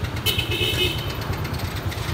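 Car engine idling with a steady low throb, and about a quarter second in a click followed by a brief high-pitched beep lasting about half a second.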